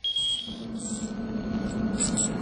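A short, high electronic beep lasting about half a second, then a steady low hum with faint high chirps.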